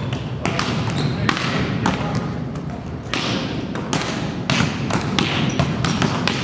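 Volleyballs struck by hands and bouncing on the court floor during a warm-up: many irregular sharp slaps and thuds, overlapping from several players at once, ringing in a large sports hall.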